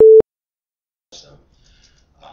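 A single short electronic beep at the start: one steady mid-pitched tone, very loud, lasting about a fifth of a second. Faint, indistinct voices follow a second later.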